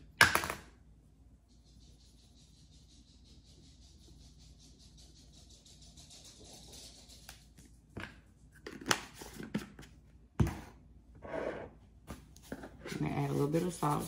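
Cayenne pepper shaken from a spice shaker onto meat: after a sharp click, a faint fine rattling hiss runs for about six seconds. Then come several knocks and one louder thump as spice containers are picked up and set down on the counter.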